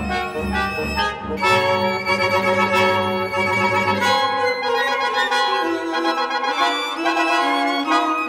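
Seven-instrument chamber ensemble of winds, trumpet and strings playing a slow Largo: long, overlapping held notes, with a fuller new chord entering about a second and a half in.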